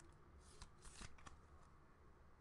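Near silence with faint rustling and a few light clicks around the middle: trading cards and a clear plastic card holder being handled.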